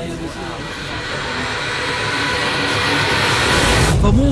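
Jet aircraft noise swelling steadily louder, a rising rush that peaks at the end, from a video soundtrack played over loudspeakers in a room.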